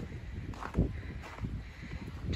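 Footsteps in fresh snow, a few irregular steps over a low rumble.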